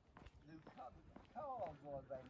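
Faint men's conversation, strongest in the second half, with footsteps tapping on a tarmac path.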